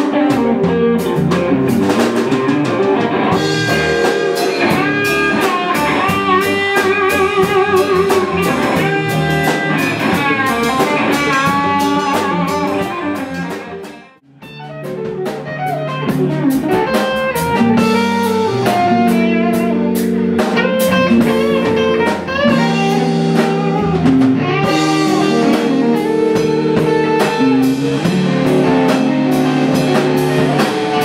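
Blues band playing live, an electric guitar leading over drums and bass. About fourteen seconds in, the music fades out briefly and another electric guitar passage with long held chords starts up.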